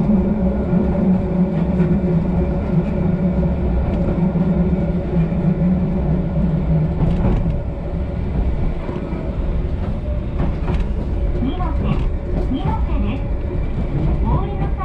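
Electric commuter train of the Eizan Electric Railway running, heard from inside the car: a steady rumble with a constant motor hum. The loudest part of the hum drops away about halfway through.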